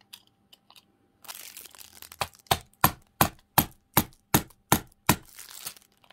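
A small hammer tapping a pin back into a metal watch bracelet link seated in a pin holder: about nine sharp, evenly spaced taps, roughly three a second, after a short rustle of handling.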